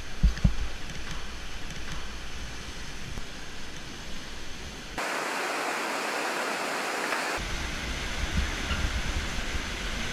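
Steady rushing of river whitewater through a rocky gorge, heard as an even noise, with a low rumble under it and a few thumps in the first half-second. The sound changes abruptly about five seconds in and again past seven seconds, when the low rumble drops out and then returns.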